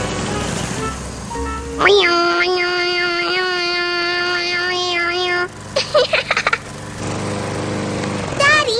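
An electric lawn mower running steadily, a cartoon sound effect. About two seconds in, a child calls out a long, drawn-out "Daddy" over it, held on one pitch for a few seconds.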